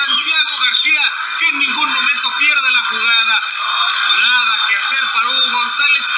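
A man's voice talking without pause on a radio sports broadcast, with the narrow, compressed sound of radio.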